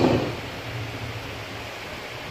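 Steady background hiss with a faint low hum in a short pause between speech, right after a voice trails off.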